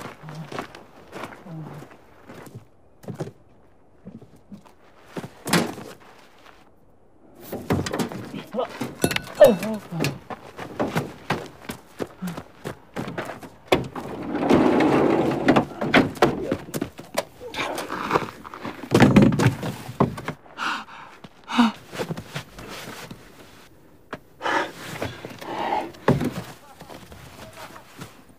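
A struggle at a minivan's sliding door: repeated thuds and knocks against the van's metal body and door, with grunts and strained breaths.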